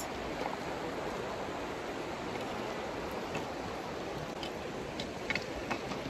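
Shallow Virgin River water flowing over rocks, a steady rush, with a few faint clicks in the second half.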